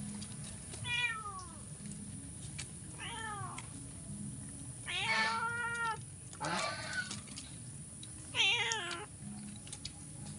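Captive crows calling: five separate calls a second or two apart, several dropping in pitch, the loudest in the middle and near the end.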